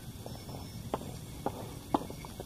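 Footsteps of a person walking, short light ticks about every half second.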